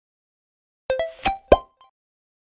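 Short end-card jingle: four or five quick popping notes that climb in pitch, starting about a second in and over within a second.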